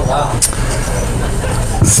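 Steady low room noise with faint murmured voices, and a short laugh near the end.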